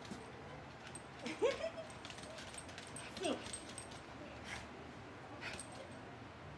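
Small shaggy dog whining softly, two short whines about two seconds apart.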